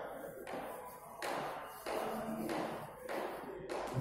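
Chalk writing on a blackboard: about half a dozen short scratchy strokes, each starting with a light tap as the chalk meets the board.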